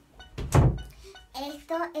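A single loud, deep thump about half a second in, then a child's voice.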